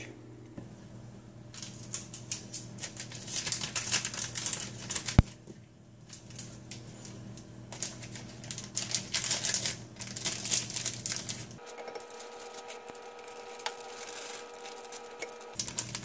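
Plastic sandwich bag crinkling and rustling in spells of rapid crackles as it is handled and filled with thick tomato paste, with one sharp click about five seconds in. It quietens to a faint steady hum near the end.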